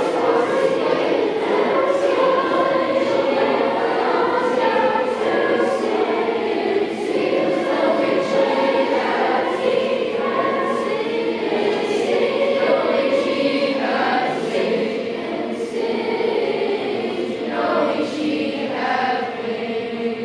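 Children's choir of sixth-graders singing unaccompanied, a cappella, with many voices together on sustained notes.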